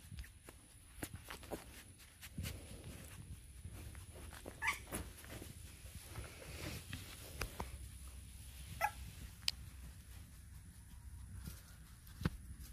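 Young Maremma–Great Pyrenees puppy giving two short high whimpers, one about five seconds in and another near nine seconds, over rustling and small knocks as the pup is held and handled.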